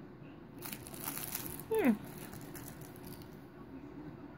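A crinkly fabric baby toy rustles and crackles under a baby's hands for about three seconds. Near the middle comes one short baby vocalisation falling in pitch, the loudest sound.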